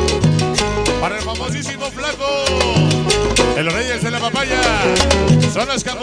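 Salsa music with a stepping bass line and steady percussion, and a lead guitar playing bending, sliding notes over it.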